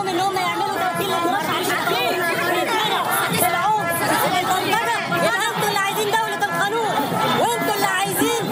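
Speech: a man talking, with other voices chattering over and around him.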